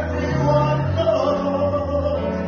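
A man singing a show tune into a hand-held microphone through a PA, holding long notes over musical accompaniment.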